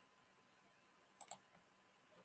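Two quick, faint clicks of a computer mouse about a second in, a double click on the charting software; otherwise near silence.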